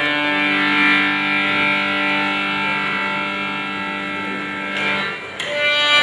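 Harmonium playing a Hindustani classical melody: long sustained notes held for about five seconds, then a short drop in level and a fresh phrase starting near the end.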